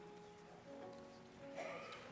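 Faint, soft keyboard music with sustained chords whose notes change every second or so, plus a few light clicks and knocks.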